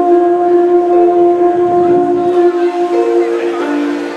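Harmonica played close into a hand-cupped microphone, holding chords that change notes about once a second.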